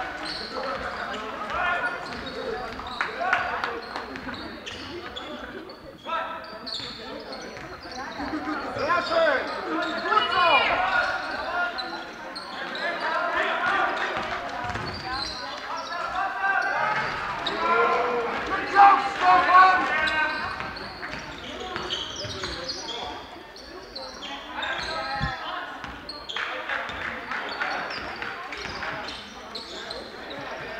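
A basketball bouncing on a hard gym floor during play, the dribbles mixed with indistinct shouts and voices of players and spectators.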